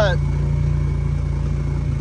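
Steady low engine hum of a small utility vehicle being driven at an even pace.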